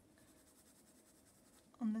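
Faint scratching of a drawing tool on paper during sketching, followed near the end by a woman's voice.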